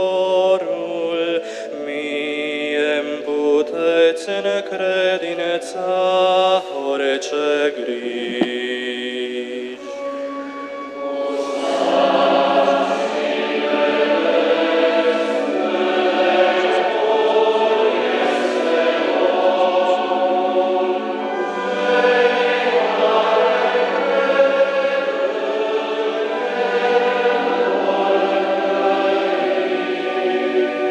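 Men's choir singing; the sound grows louder and fuller about eleven seconds in.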